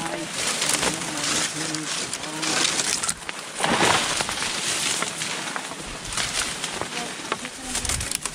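Dry saw palmetto fronds and leaf litter rustling and crackling as people push through the scrub on foot, with a louder brush of fronds about three and a half seconds in.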